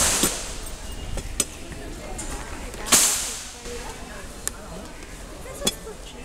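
Two sharp cracks about three seconds apart, each trailing off over about half a second, with a few fainter clicks between them.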